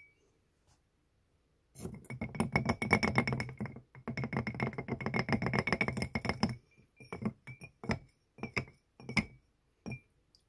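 Tweezers clinking against drinking glasses: a dense run of very rapid glassy clinks for about five seconds, then a handful of separate clinks, each with a short glass ring.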